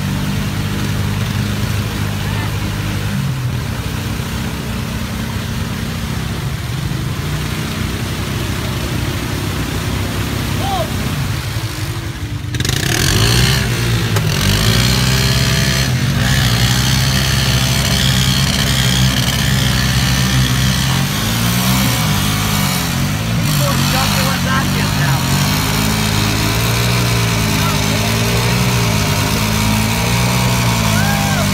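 Two ATV engines running in deep mud while one quad tows the other out on a line. About twelve seconds in they get louder and rev up and down, with the stuck quad's tyres spinning and throwing mud.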